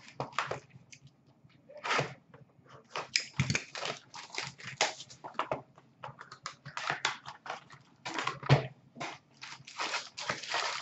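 Cardboard hobby boxes of 2019-20 Upper Deck SPx hockey cards being handled and opened by hand: irregular rustling, scraping and crinkling of card stock and wrapper, with a sharper knock about eight and a half seconds in.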